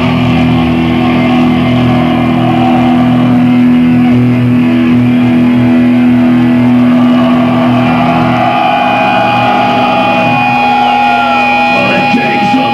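Distorted electric guitars of a live black metal band holding a long, ringing chord. A higher steady tone joins about two-thirds of the way through, and the low chord fades just before the end.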